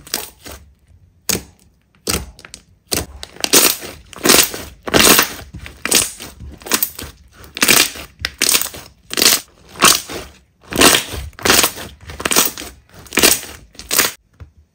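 Hands kneading and squeezing a thick green slime, giving a regular series of loud squishes, roughly three every two seconds, each squeeze one burst of sound. The squishes are sparser for the first two seconds before settling into a steady rhythm.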